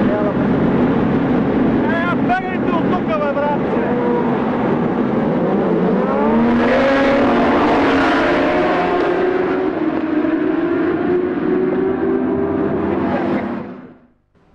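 Several racing motorcycles at full throttle, their engine notes climbing together as they accelerate away about six seconds in, then a long high engine note that fades and cuts off at the end.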